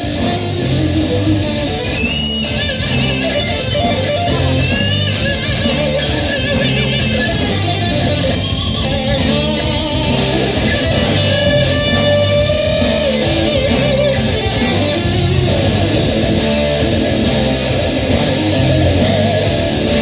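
Live rock band playing an instrumental break without vocals: electric guitars over bass guitar and drums, with a guitar line that slides between notes.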